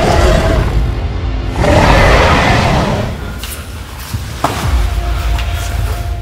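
Dramatic film music with two long, loud roars from a film-style Tyrannosaurus rex sound effect, the second fading out about three seconds in. A single sharp knock follows near the middle.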